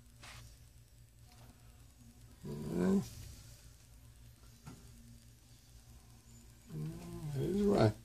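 A man's voice: a short low "hmm" about two and a half seconds in, and speech starting near the end, over a steady low hum.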